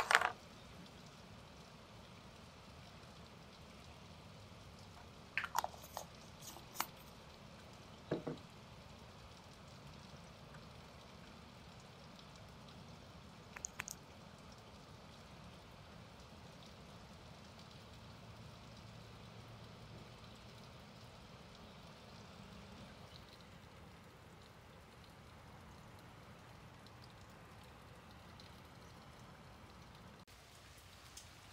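Faint room tone broken by a few short clicks and taps, most of them in the first fourteen seconds, the loudest right at the start.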